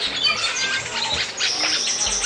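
Birds chirping in short, high calls, with a thin steady high note joining about one and a half seconds in.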